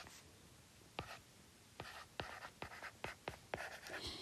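Faint taps and scratches of a stylus handwriting on a tablet screen. There is a single tick about a second in, then a quicker run of light strokes through the second half.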